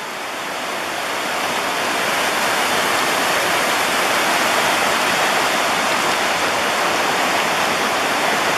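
River water rushing over rock ledges just above a waterfall: a steady, loud rush of water that grows louder over the first two seconds, then holds.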